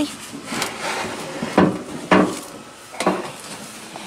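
Hollow knocks and bumps as a heavy plastic storage tote full of worm compost is handled and lifted to be tipped into a galvanized stock tank, four distinct knocks spread over the few seconds.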